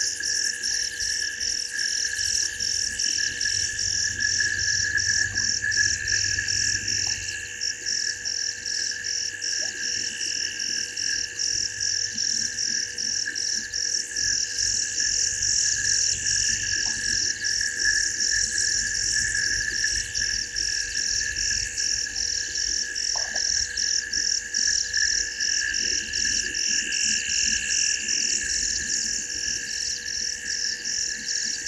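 Night chorus of calling insects and frogs: an evenly pulsing high trill over a steady, lower, continuous drone, with a few brief faint chirps now and then.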